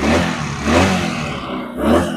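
150cc Rebel-style cruiser motorcycle engine running and revved with throttle blips, three surges: one at the start, one a little under a second in, and one near the end.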